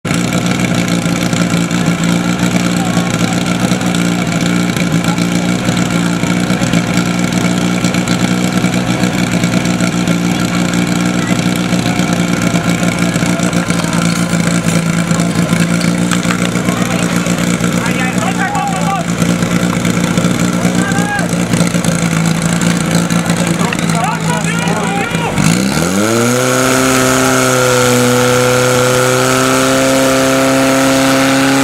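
Portable fire pump's engine running steadily at high revs. About 25 seconds in it climbs sharply to a higher, steady pitch as it is opened up to full throttle to drive water into the attack hoses.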